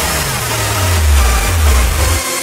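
Hardcore techno breakdown: the fast kick drum drops out, and a deep bass tone slides down in pitch and then holds, under a haze of high synth noise.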